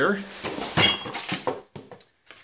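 Loose metal parts clinking and rattling in a parts box as it is rummaged through, with a bright metallic clink a little under a second in and a few short clicks after it.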